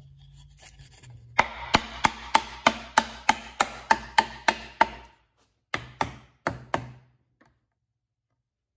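Mallet knocking a hand-cut wooden box joint together, driving the fingers home: about a dozen sharp, evenly spaced blows at roughly three a second, then a short pause and two quick pairs of blows.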